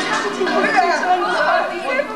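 Chatter of several young people talking over one another, none of it clearly made out.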